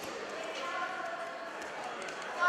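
Voices echoing around a sports hall, with a raised, drawn-out call starting about half a second in, and a few light thumps.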